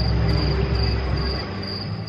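Night insects chirping: a thin, high trill that pulses a few times a second, over a low rumble that fades about two-thirds of the way through.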